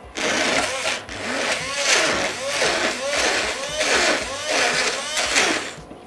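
Hand-held stick blender running in a glass bowl of cake batter, a loud whir that dips briefly about a second in and cuts off just before the end.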